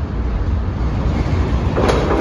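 Steady low traffic rumble reverberating in a rock road tunnel, swelling with a louder rushing noise near the end as a vehicle approaches.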